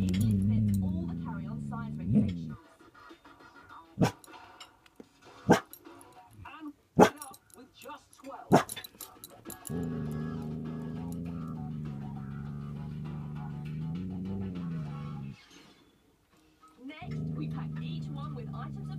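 Collie-cross dog growling at a deer through a caravan window. It gives long, low, steady growls: one of about two seconds at the start, one of about five seconds in the second half, and another starting near the end. Four short, sharp sounds come about a second and a half apart in the gap between them.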